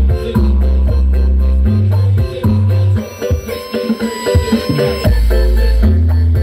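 Loud dance music with heavy, sustained bass notes played through the Fani Audio 'horeg' stacked speaker system. The bass drops out for about two seconds in the middle, then comes back in.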